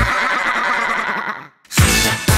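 The funk backing drops out for a warbling sound effect lasting about a second and a half. It cuts off suddenly into a brief silence, and the beat comes back near the end.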